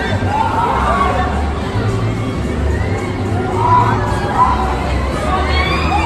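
Riders on a swinging pendulum ride screaming and shouting together, many voices gliding up and down in pitch.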